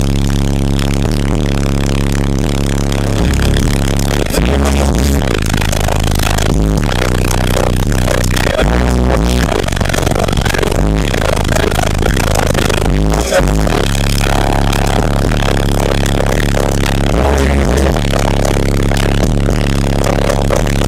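Bass-heavy music played at very high level through a competition car audio system's subwoofers, the low bass notes changing every second or so, with a rough, rattly noise over them.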